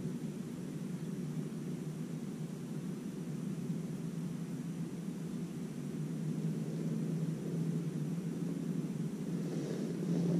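A steady low motor-like drone with a constant hum that grows a little stronger in the second half.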